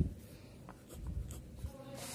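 Ballpoint pen scratching faintly on paper in a few short strokes.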